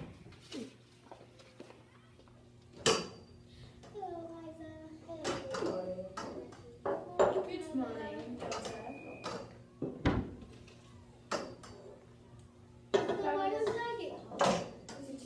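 Indistinct voices mixed with sharp knocks and clatter of cups and other objects being handled on a table. The loudest knocks come about three seconds in and again about ten seconds in.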